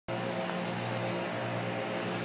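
A steady mechanical hum at one constant pitch, even in level throughout.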